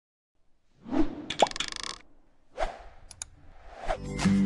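Animation sound effects: a whoosh about a second in with a short pop and a quick run of clicks, then two more whooshes with a pair of short clicks between them.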